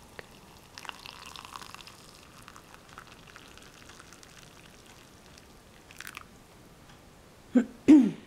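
Water poured from a glass pot into a ceramic cup over a mesh tea-ball infuser, a soft splashing trickle, strongest in the first couple of seconds and then fading. Near the end come two sharp knocks with a brief low ring.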